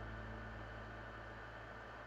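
Faint room tone: a steady low hum with light hiss, slowly fading.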